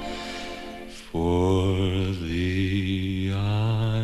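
Orchestral accompaniment of a 1950s pop ballad in an instrumental break: the music thins to a soft, dying note, then just after a second in a full sustained chord comes in and is held, wavering slightly.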